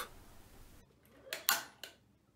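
Ceiling pull-cord shower isolator switch being pulled to cut the power to an electric shower: a quick cluster of sharp clicks about one and a half seconds in, against quiet room tone.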